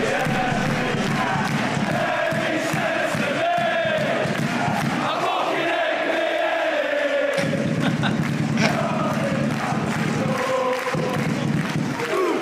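A stadium crowd of football supporters singing a chant together, many voices carrying one sung tune without a break.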